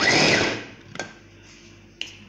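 Electric mini food chopper running in a short burst, its blade whirring in the glass bowl, then cutting off about half a second in. A single click follows about a second in.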